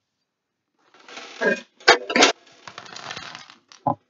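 About a second of silence, then rustling handling noise with a few sharp clicks and knocks: hands rummaging through toys in a metal tin and picking them up.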